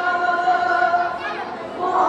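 Several voices singing together in long held notes. The singing drops away briefly about one and a half seconds in, then comes back.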